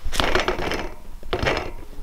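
BMX bike's front wheel hub rattling and grinding as the wheel is turned: its bearings are loose. A dense rattle fills the first second, then a single sharp click.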